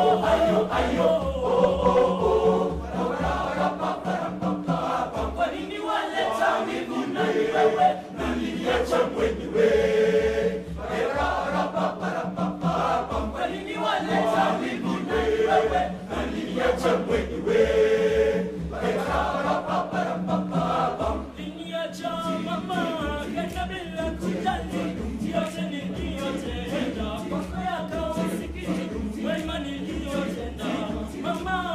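Male school choir singing a Swahili song in several parts, over a steady low pulsing beat that drops out briefly a few times.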